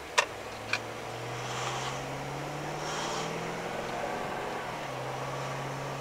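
Car engine running with a steady low hum, slightly rising in pitch over the first two seconds, preceded by two sharp clicks in the first second, with the faint hiss of traffic passing.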